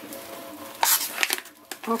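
Clear plastic resealable bag around a filament spool rustling and crinkling as it is handled. A louder crinkle comes about a second in.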